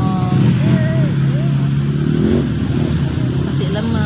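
A steady low rumbling hum throughout, with a short, high, wavering voice sound about a second in.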